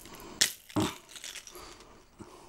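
Plastic baby toys being handled: a sharp click about half a second in, then a short dull knock.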